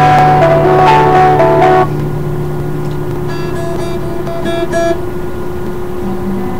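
Acoustic guitar playing, loud for about the first two seconds, then suddenly quieter, with single ringing notes picked over a held low note.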